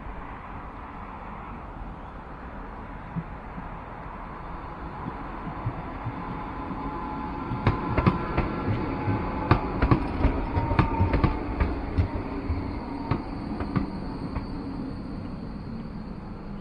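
Electric light-rail tram passing a stop. Its approach is a low steady rumble; about halfway through it goes by close, with a run of sharp clicks from the wheels over the rail joints and a faint falling whine. Then it fades.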